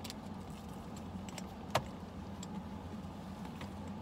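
Metal hardware on a Coach canvas handbag clicking and clinking lightly as the bag is handled and opened, with one sharp click a little under two seconds in, over a steady low hum.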